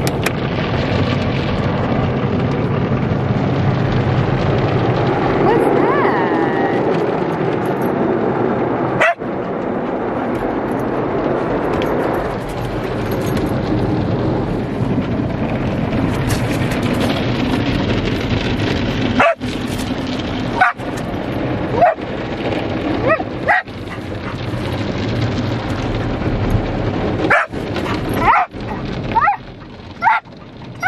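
Australian cattle dog whining and yipping inside a car, over the steady rush of an automatic car wash's water spray. A long gliding whine comes about six seconds in, and short high yips come thick and fast near the end.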